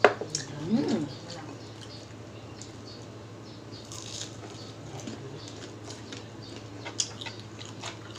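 Close-up eating sounds from two people eating with their hands: chewing and small wet mouth clicks, with a sharp click right at the start and another about seven seconds in, over a low steady hum.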